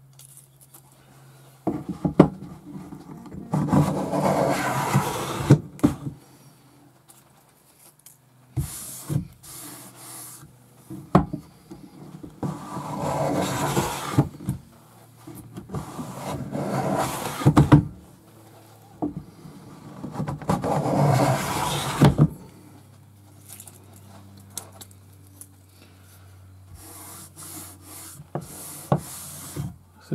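Japanese pull-type block plane (kanna) shaving a wooden board: four long strokes of about two seconds each, with short knocks between them as the plane is set on the wood.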